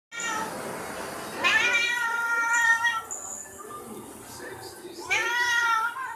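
A black domestic cat meowing loudly: a long, drawn-out meow that rises in pitch about a second and a half in and holds until about three seconds, then a second, shorter rising meow near the end.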